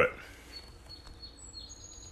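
The last word of speech, then faint room noise with a few thin, high steady whistling tones in the background.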